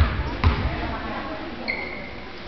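A basketball bounced twice on a gym floor about half a second apart as a free-throw shooter dribbles at the line, over the chatter of the crowd. A short high squeak comes near the end.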